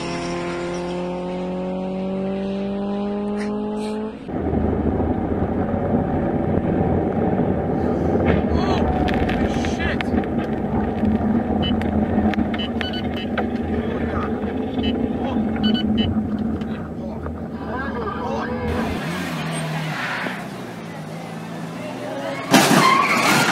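A race car's engine accelerating, its pitch rising steadily for about four seconds. Then, suddenly, loud, steady road and vehicle noise with scattered knocks and clicks.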